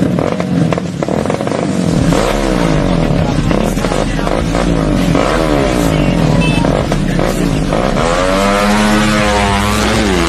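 Small street-race motorcycle engines, a Suzuki Satria FU and a Yamaha Mio scooter, revved hard again and again at the start line, their pitch repeatedly rising and falling. Near the end one engine revs up and holds high as a bike launches away.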